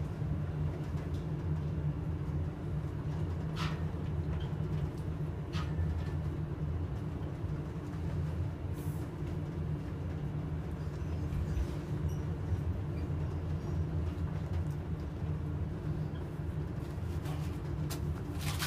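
Steady low rumble inside a Schindler 7000 high-rise elevator car travelling upward at high speed, with a couple of brief clicks about four and six seconds in.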